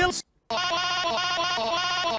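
A long, wavering, bleat-like vocal sound that steps up and down in pitch, starting about half a second in after a brief gap.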